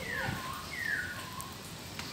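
About three short animal calls, each dropping in pitch, in the first second and a half, over a steady hiss of rain.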